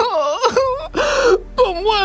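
A man wailing in grief: a long wavering moan that slides up and down in pitch, then breaks into shorter sobbing cries.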